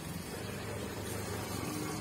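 Steady low background hum with a faint even hiss, with no distinct handling sounds standing out.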